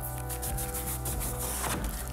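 Background music playing steadily, with the crackling rustle of shiny gold gift wrap and a folded paper brochure being opened by hand.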